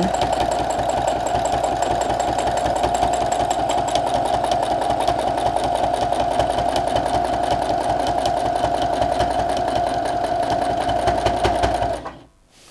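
Domestic sewing machine with a spring-loaded free motion foot running steadily at speed, its needle stitching in rapid even strokes through a quilt sandwich as the fabric is guided by hand. It stops abruptly at the end.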